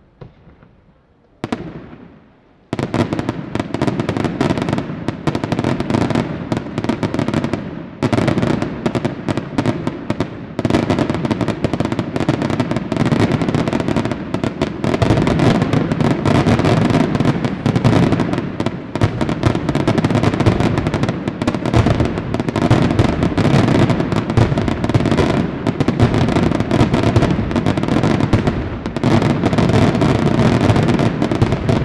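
Aerial fireworks display: a single bang about a second and a half in, then from about three seconds a dense, nonstop barrage of shell bursts and reports.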